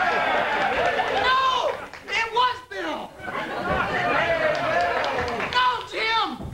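Several people's voices talking over one another, the words indistinct.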